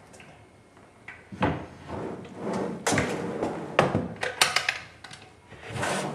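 Wooden cabinet drawers being slid open and shut, with scraping and several sharp knocks and clicks, a quick cluster of clicks coming near the end.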